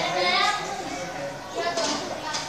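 Young girls' voices speaking, a spurt of talk at the start and another near the end.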